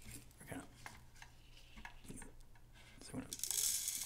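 Activated charcoal pellets clattering: a metal scoop ticking and scraping among the pellets, then a louder rattling pour of pellets into the plastic chamber near the end.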